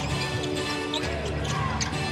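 Music playing over the arena's sound system, with a basketball being dribbled on the hardwood court.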